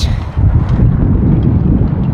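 Gusty wind buffeting the microphone: a loud, uneven low rumble.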